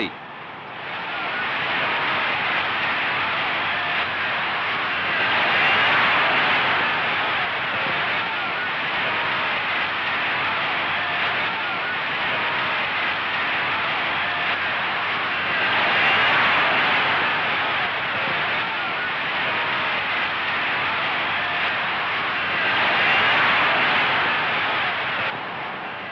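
Crowd noise from a large boxing audience: a dense, steady din of many voices, swelling louder three times, about six, sixteen and twenty-three seconds in.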